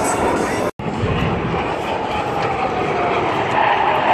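Jet engines of a formation of military display jets passing, a loud steady roar with a slowly falling whine in it. The sound cuts out for an instant just under a second in.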